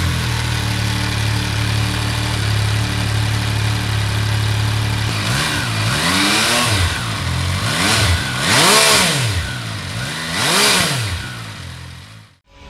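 MV Agusta Turismo Veloce 800's three-cylinder engine idling steadily through its triple-outlet exhaust, just after being started, then revved several times in short blips that rise and fall in pitch in the second half.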